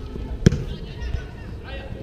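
A soccer ball struck once with a sharp thud about half a second in, as it is kicked on artificial turf, over players' voices calling across the pitch.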